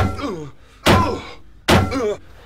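Three heavy thunks about a second apart: blows landing in a fistfight with a robot. Each is followed by a short falling tone.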